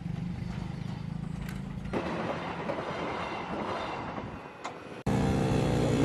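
Field sound at a railway level crossing: a steady low hum, then a vehicle passing that swells from about two seconds in and fades away, before the sound cuts to a different steady low hum near the end.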